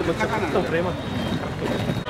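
Several men's voices talking over one another in a group, over a steady low background rumble.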